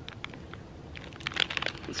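Plastic candy wrapper crinkling as it is handled, a few light crackles, more toward the end.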